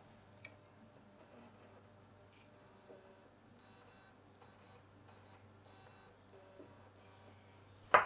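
Near silence: a faint steady electrical hum, with a small click about half a second in and a sharper click just at the end.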